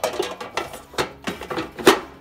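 Removable parts of a Philips air fryer knocking and clattering as they are fitted into its drawer: about five sharp knocks, the loudest near the end.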